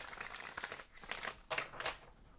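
A tarot deck being shuffled by hand: light rustling and clicking of the cards sliding against each other, in a few short bursts.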